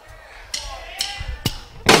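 Count-in of three sharp clicks about half a second apart, then a rock band of drums and distorted electric guitar comes in loudly near the end, starting the song.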